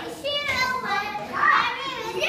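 Children playing: high-pitched kids' voices calling out, loudest about one and a half seconds in.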